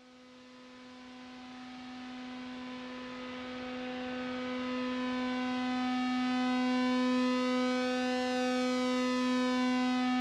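Analog synthesizer holding one steady droning note, fading in from silence and growing steadily louder, its tone getting brighter as the overtones open up in the second half.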